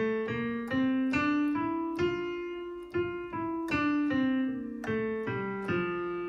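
Digital piano playing the F major scale one note at a time, a couple of notes a second, stepping up and then back down, with the last note left ringing near the end.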